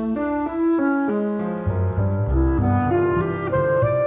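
Instrumental passage with no singing: a clarinet melody over grand piano chords, with low double bass notes coming in about a second and a half in.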